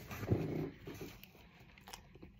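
Close-miked mouth sounds of someone eating a dark chocolate square: a short, low, voiced hum-like sound from the mouth about half a second in, then soft wet chewing clicks.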